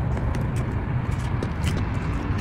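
Steady low outdoor rumble with a few faint light ticks over it.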